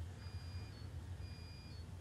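Faint electronic beeping: a half-second beep followed by a short higher blip, repeating about once a second, over a low steady hum.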